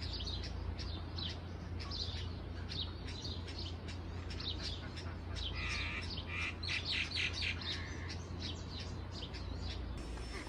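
Small birds chirping, many short high chirps throughout with a busier flurry of calls around the middle, over a low steady hum.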